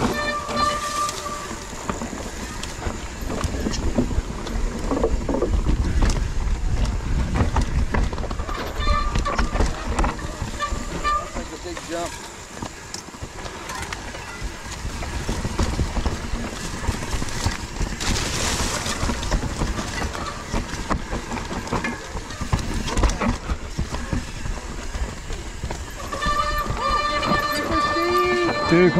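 Mountain bike rolling down a dirt singletrack: steady tyre rumble and frequent rattling knocks from the bike over rough ground, with wind buffeting the handlebar camera's microphone.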